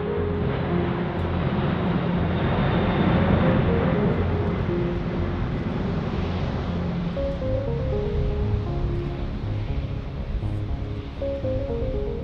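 Background music with a pulsing bass line and a simple synth melody, mixed with the broad jet noise of an Airbus A380 flying overhead. The jet noise swells to its loudest a few seconds in, then eases off.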